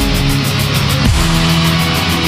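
Loud live concert music: sustained heavy chords over a fast, even high ticking beat, with a sharp falling pitch slide about a second in.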